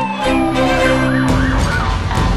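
A passing emergency vehicle's siren, winding slowly down in pitch and fading out about a second in, over the low rumble of parade traffic.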